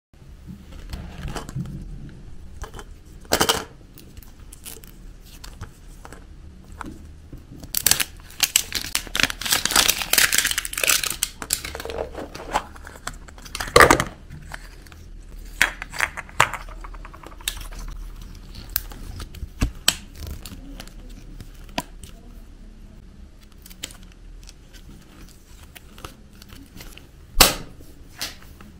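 A plastic surprise-egg capsule being handled and snapped open by hand, with sharp plastic clicks, the loudest about halfway through as the halves come apart. A plastic wrapper crinkles and tears, most densely for a few seconds just before that.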